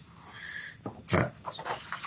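A man's hesitant 'uh' and short breathy mouth and throat noises between sentences, picked up by a video-call microphone.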